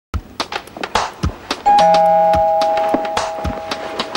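Two-tone ding-dong doorbell chime rings about one and a half seconds in, the higher note followed by a lower one that rings on and slowly fades. A run of sharp clicks and knocks is heard throughout.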